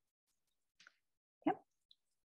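Near silence, broken once about one and a half seconds in by a single short spoken "yeah".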